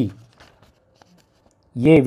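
Speech reading out quiz answer options, breaking off just after the start and resuming near the end; the pause between is nearly silent apart from a few faint ticks.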